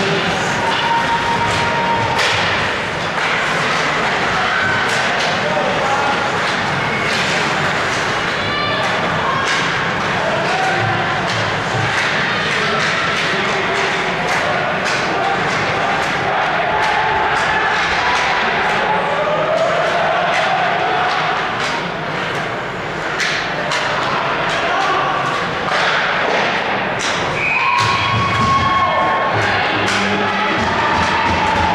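Live ice hockey game in a rink: frequent sharp clacks and thuds of sticks, puck and bodies against the boards over a steady din of spectators' voices and shouts. Near the end the crowd breaks into cheering as a goal goes in.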